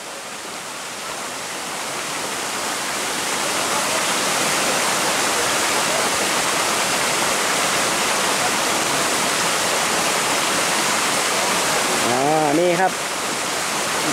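Shallow stream flowing steadily over rocks and small cascades, growing louder over the first few seconds and then holding even.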